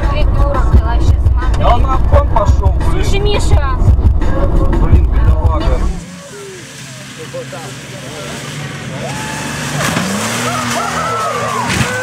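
Loud low road rumble inside a car's cabin with voices over it; about halfway through it cuts off, and a truck's engine is heard revving as the truck slides across snow, rising in pitch near the end, with voices.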